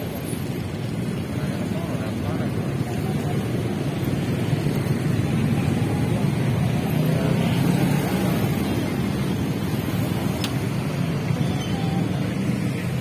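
Steady road traffic dominated by motorcycle engines idling and moving off in a queue, with people's voices mixed in.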